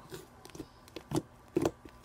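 Hands squishing and patting a soft butter slime made with cornstarch: a few short, separate squishes, the loudest about one and a half seconds in.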